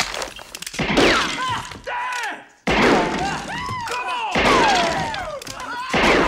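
Film soundtrack of a Western saloon fight: sharp impacts and shots with shouting voices and gliding, whining tones, with sudden loud hits about a third and two-thirds of the way through.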